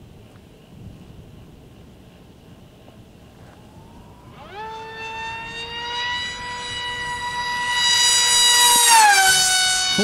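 High-pitched whine of an RC foam jet's 2400 kV brushless electric motor and 6x5.5 propeller on a 4S LiPo at high speed. It comes in about halfway through with a quick rise in pitch, holds a steady note while growing louder, and drops in pitch at its loudest point near the end as the plane goes past. It is the sound the pilots call screaming.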